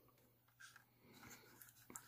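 Near silence, with a few faint soft handling noises from a die-cast model car being turned in the hands.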